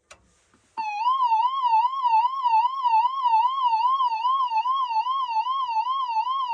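WB1400 carrier control point sounding a warbling alarm tone, the attack warning of the four-minute warning. It starts with a click and comes in about a second later, a steady pitch rising and falling about two and a half times a second.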